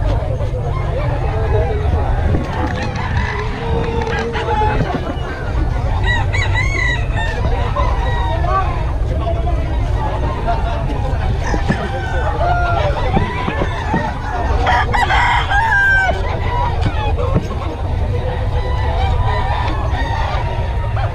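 Gamecock roosters crowing several times and clucking, over background chatter and a steady low rumble.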